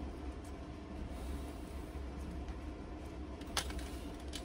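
Steady low hum of workshop background noise, with a faint click about three and a half seconds in.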